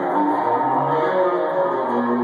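Custom solid-body electric guitar played through an amplifier: a picked riff of single notes and short held notes, running without a break.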